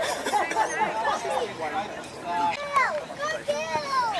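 Women's voices shouting and calling out, with several long, high-pitched calls in the second half.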